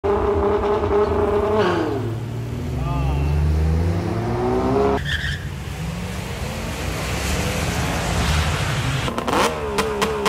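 Car engines running and revving at a drag-strip starting line. The engine pitch drops sharply under two seconds in, and about five seconds in the sound cuts abruptly to another engine running, which revs up and back down near the end.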